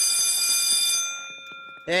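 Electric school bell ringing steadily, signalling the end of the class period, then dying away in the second half.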